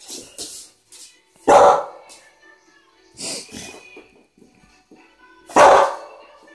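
American Staffordshire Terrier barking twice, single short barks about four seconds apart.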